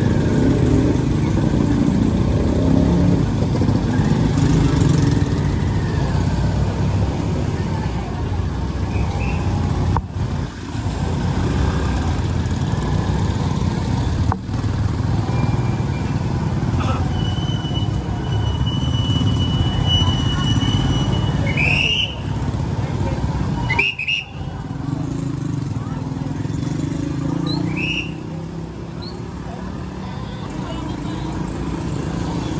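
Low steady engine and traffic rumble of slow-moving motorcycles and tricycles on a wet street. A thin, high whistle-like tone holds for a few seconds about two-thirds of the way through, and a few short high chirps follow it.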